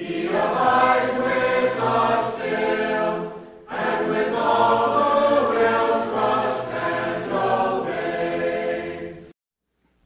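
A church choir singing a hymn unaccompanied, several voices in harmony, in two long phrases with a brief break between them a little over three seconds in. The singing cuts off shortly before the end.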